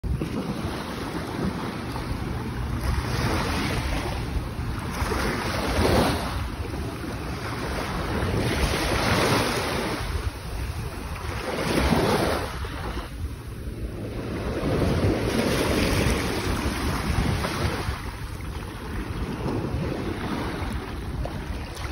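Rushing noise of waves, swelling and ebbing every few seconds, with wind rumbling on the microphone.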